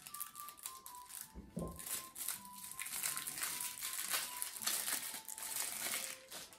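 Plastic shrink-wrap crinkling in a quick run of crackles as it is peeled off a stack of cardboard board-game map tiles, over soft background music.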